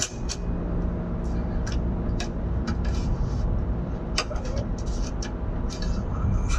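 Cassette tape player being tried with a freshly spliced tape: scattered clicks from its keys and mechanism over a steady hum, with no music coming out; the repaired tape fails to play.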